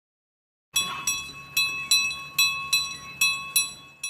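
A short closing jingle of bell chimes starts after a moment of silence: about eight struck, ringing notes, roughly two to three a second.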